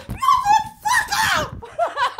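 Women's high-pitched squeals of fright at a wasp flying overhead, with quick rhythmic laughter near the end.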